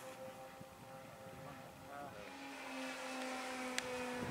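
Twin-engine radio-controlled scale warbird model flying overhead, its motors giving a steady drone that grows louder toward the end.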